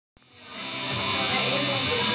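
Electric tattoo machine buzzing steadily as it needles the skin of a shoulder, fading in over the first second, with background music playing along.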